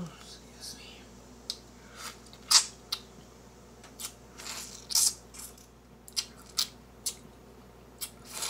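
A short sigh, then close-up wet eating sounds of a juicy grapefruit segment being bitten, sucked and pulled apart. They come as a string of short bursts and clicks, the loudest about two and a half and five seconds in.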